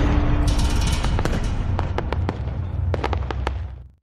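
Logo-intro sound effect: the low rumble tail of an impact, scattered with sharp crackles like sparks. It fades out just before the end.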